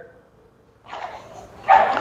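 Cotton taekwondo uniform rustling and swishing, with bare feet shifting on foam mats, as a practitioner turns and steps into a block; the swish builds about a second in and is sharpest near the end.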